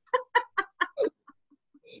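High-pitched laughter over a video call: a quick run of about six 'ha' bursts, several a second, that trails off into a few fainter ones.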